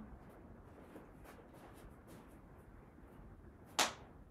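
A pair of dumbbells set down on the floor, making one sharp clunk near the end; before it, only faint room noise and a few light ticks.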